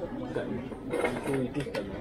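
People talking in the background, with a few short, sharp clicks about a second in and shortly before the end.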